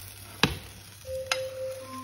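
A fish slice knocking as a fried fish fillet is lifted from a frying pan onto a plate: one sharp clack about half a second in, then a lighter click about a second later.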